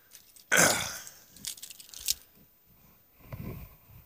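A man coughs once, loudly, about half a second in. A couple of faint clicks follow.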